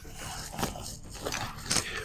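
Faint rustling and handling of nylon tactical gear as a backpack is taken off, with a few light clicks and taps.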